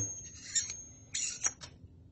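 Short metallic rubbing and sliding of a small stainless steel press plunger rod being handled, in two brief spells, with a light click about one and a half seconds in.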